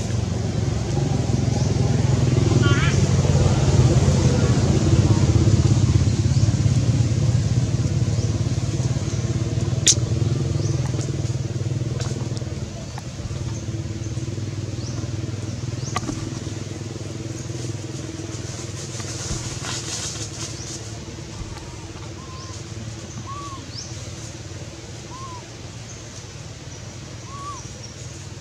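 A motor vehicle's engine runs steadily, loudest in the first few seconds and fading away through the second half. There is a brief high wavering call about three seconds in and a few short chirps near the end.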